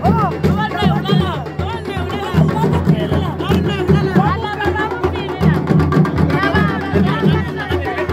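Traditional drums beating a steady rhythm, about two or three beats a second, with voices chanting and calling over it.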